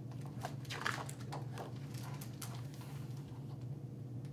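Pages of a hardcover picture book being turned by hand: a run of soft paper rustles and crackles over the first two and a half seconds, over a steady low hum.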